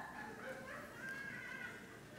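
A person's faint, high, wavering cry, like a whimper.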